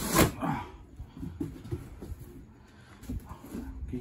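Cardboard lid of a large boxed RC truck being slid off: a sudden loud scrape at the start, then softer cardboard rubbing and a few light taps.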